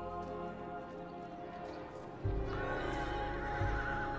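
Soft film-score music; a little past halfway a deep hit comes in, with a horse's whinny over the music.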